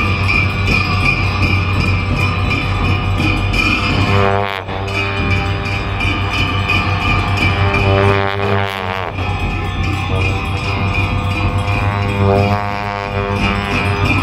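Tibetan monastic ritual music for a cham dance: long dungchen horns hold a deep, steady drone, and gyaling shawms play a wavering, bending melody above it. The sound dips briefly about four and a half seconds in, and the melody swoops several times in the second half.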